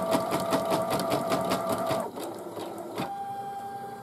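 Singer Futura embroidery machine stitching with rapid, evenly spaced needle strokes that stop about halfway as the wavy line finishes. About three seconds in there is a click, then a steady motor whine as the embroidery arm moves the hoop back to the top.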